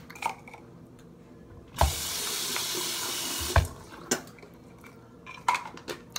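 Bathroom sink tap turned on, water running into the basin for about two seconds, then turned off, with a knock as it starts and as it stops. A few light clicks and knocks of handling come before and after.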